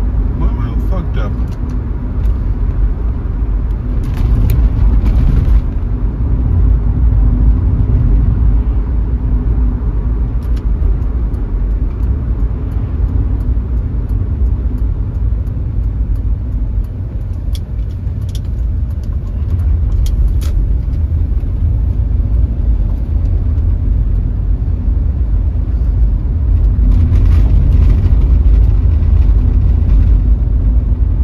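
Inside a moving car: steady low rumble of engine and tyre noise, getting a little louder near the end.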